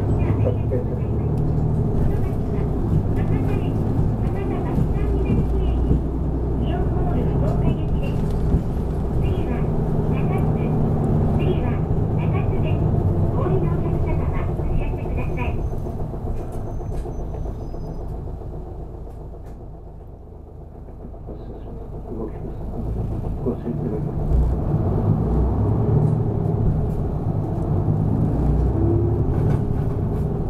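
Low engine and road rumble inside a Nishitetsu city bus on the move. It falls away to a quieter lull around the middle and then builds again.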